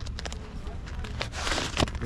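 Light clicks and a brief papery rustle about one and a half seconds in: banknotes being handled and pulled out to pay.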